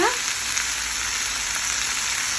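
Oil sizzling steadily in a large frying pan as sliced onions and bacon-wrapped hot dogs fry.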